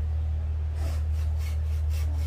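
A tape measure rubbing and scraping against the rough bark of a bougainvillea trunk as it is wrapped around it: a run of short rasping strokes starting about a second in, over a steady low hum.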